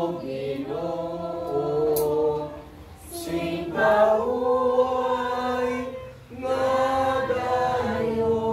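A group of people singing a hymn together, in phrases of about three seconds with brief breaks between them.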